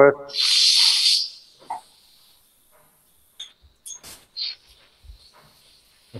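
A loud hiss lasting about a second, followed by a few faint clicks.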